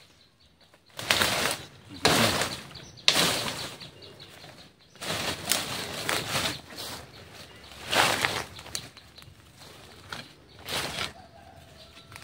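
Dry leaf litter and undergrowth rustling in about six irregular bursts of a second or two, as someone walks and pushes through the vegetation.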